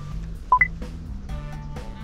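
Background music with a steady beat. About half a second in, a short two-note electronic beep, the second note higher, is the loudest sound.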